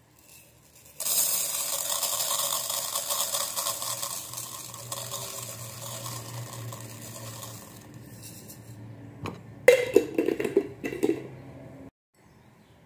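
Dry red lentils poured from a glass jar into an empty nonstick metal pot: a steady rattling hiss of grains hitting the pan, loudest as the pour begins about a second in and fading over several seconds. Near the end, a few sharp clinks and knocks.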